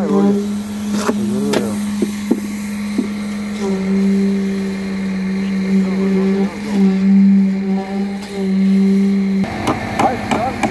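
Concrete poker vibrator running in freshly poured wall concrete: a steady hum that shifts slightly as the poker is worked, with brief dips, cutting off about nine seconds in. Brief voices about a second in.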